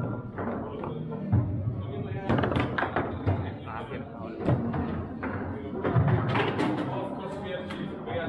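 Foosball play: the ball knocking against the plastic player figures and the table walls in a series of sharp, irregular knocks, over steady background chatter and music.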